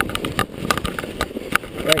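Mountain bike clattering over roots and rocks under fresh snow: irregular sharp knocks and rattles of the bike over a low rumble of the tyres rolling.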